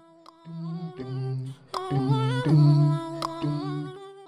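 Background music: a wordless a cappella vocal hum in held, layered notes, starting softly and swelling past the middle.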